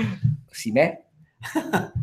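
Men's voices in short, broken bursts, with a pause about a second in.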